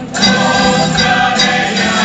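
A mixed group of amateur singers, men and women, singing a Spanish Christmas carol (villancico) together with acoustic guitar. A new sung phrase starts just after a brief break at the beginning.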